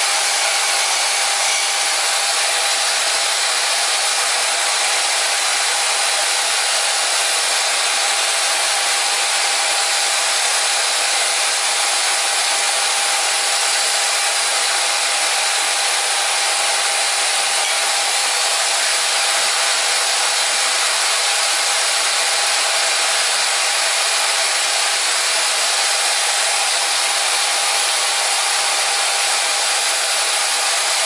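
Portable band saw running steadily with its blade cutting a small hand-held part: a loud, even rasping hiss with a steady whine underneath.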